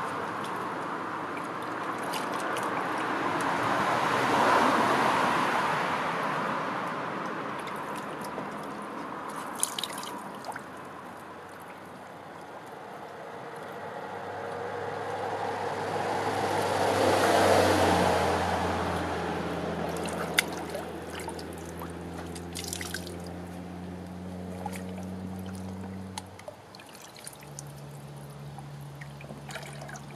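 Brook water trickling and splashing around hands working in the shallows, with a few sharp knocks. Road traffic passing, swelling and fading twice, about four and seventeen seconds in, and a steady engine hum through the second half.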